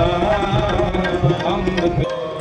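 Sikh kirtan music with tabla drumming under a sustained melody.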